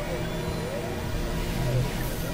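Experimental electronic synthesizer drone: a low steady hum under thin tones that glide up and down in pitch, over a noisy hiss.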